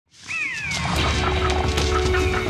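Intro music with a low steady drone and light clicks, and an animal call falling in pitch near the start.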